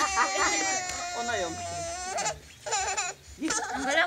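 A baby crying and fussing: one long drawn-out wail over the first two seconds, then shorter broken cries, with adult voices talking over it.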